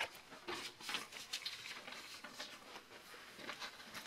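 Faint handling noise in a small room: light rustling and a few small taps and clicks.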